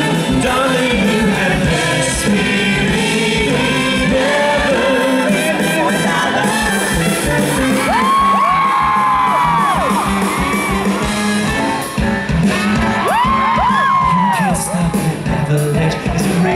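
Live band, electric guitar among it, playing an up-tempo show tune, with high whooping voices rising over the music twice, about halfway through and again near the end.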